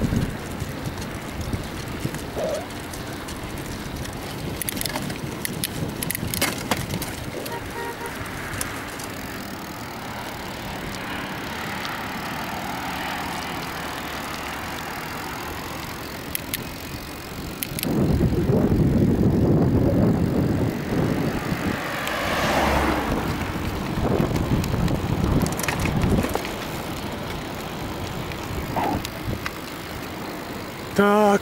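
Bicycle rolling along an asphalt road: steady tyre and wind noise with a few light clicks and rattles from the bike. Heavy wind buffets the microphone from about two-thirds of the way in, with further gusts a few seconds later.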